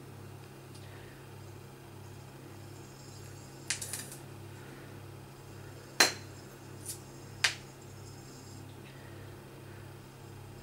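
A utensil clicking against a honey jar as honey is worked out of it into a cored apple: a few light clicks about four seconds in, then three sharper ones, the loudest about six seconds in. A low steady hum runs underneath.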